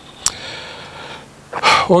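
A man's breath pause into a handheld microphone: a small mouth click a moment in, faint hiss, then a quick inhaled breath near the end just before he speaks again.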